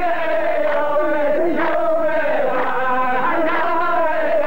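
A row of men chanting a qalta poetry verse together in unison, a drawn-out melodic line with long held notes that bend slowly in pitch.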